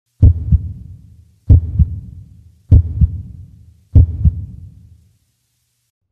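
Heartbeat sound effect: four deep double thumps, one pair about every 1.2 seconds, each pair followed by a rumble that dies away. The last fades out about a second before the end.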